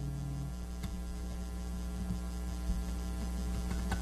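Steady electrical mains hum from the stage sound system and amplified instruments, with a lingering held note that stops about half a second in and a few faint ticks.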